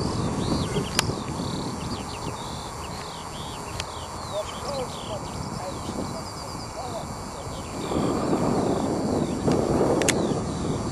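Small songbirds chirping over and over above a steady rushing noise that swells near the end. There is one sharp click about a second in.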